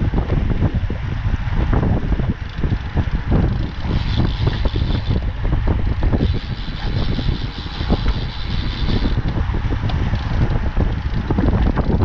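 Wind buffeting the microphone of a camera on a moving road bike, over the rumble of tyres on asphalt. A higher buzz comes in twice in the middle.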